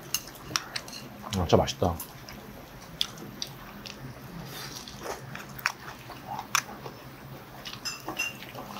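Close-up eating sounds: biting and chewing crispy potato pancake, with sharp clicks of metal chopsticks against the plates and pan. A short voice-like hum comes about a second and a half in.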